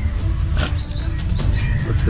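A small bird chirping: a run of short, high chirps, several a second, stepping up and down in pitch, over a steady low rumble.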